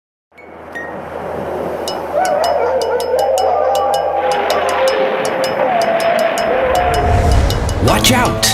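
Eerie sound-effect intro to an animated Halloween song: a rush of wind-like noise over a steady low hum, with scattered clicks and wavering, wailing tones, and a low rumble building near the end.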